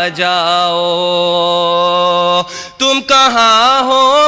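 A man singing a line of an Urdu ghazal in tarannum style into a stage microphone: one long held note for about two and a half seconds, a brief break, then another wavering sung phrase.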